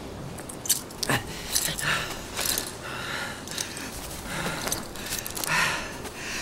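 Two men struggling in snow: rasping breaths and grunts, with rustling clothing and a few sharp clicks and jangles of metal climbing gear.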